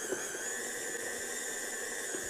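KitchenAid Artisan tilt-head stand mixer kneading bread dough, its motor running with a steady high whine that steps up slightly in pitch and level right at the start.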